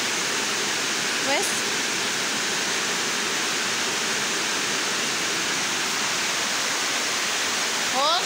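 Steady, even hiss of heavy rain.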